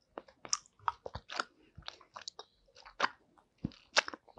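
Close-miked chewing of a gummy candy: wet, sticky mouth clicks and smacks come irregularly, several a second.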